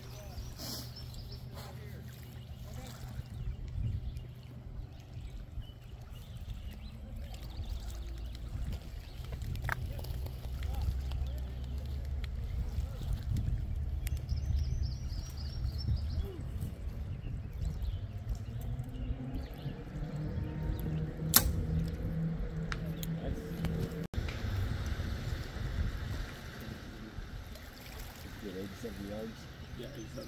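Low wind rumble on the microphone, with one sharp snap about two-thirds of the way through: a compound bow being shot.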